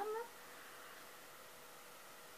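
A brief rising vocal sound cut off in the first moment, then faint steady hiss with a thin hum: room tone.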